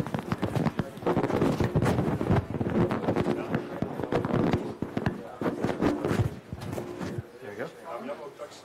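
A live clip-on microphone being handled and fitted to a shirt, giving irregular rustling, scraping and bumps that thin out near the end, with low voices murmuring underneath.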